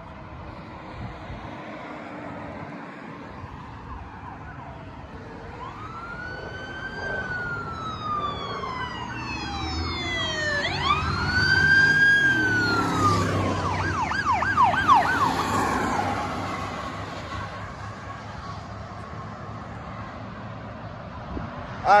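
Police car sirens approaching and passing: a slow rising-and-falling wail grows louder, is loudest near the middle as a cruiser goes by with its engine and tyre noise, and switches to a fast yelp shortly after before fading away.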